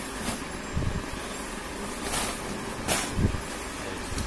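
Cotton saree fabric rustling as it is shaken out and unfolded, with brief swishes about two and three seconds in, over steady background noise.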